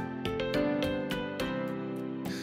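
Background music: a gentle melody of plucked-string notes, a few picked each second.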